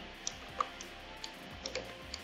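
A few faint, scattered clicks from a computer mouse's buttons and scroll wheel, with quiet background music underneath.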